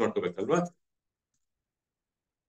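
A man speaking over a video call for the first part, then the sound cuts off about two-thirds of a second in to dead silence.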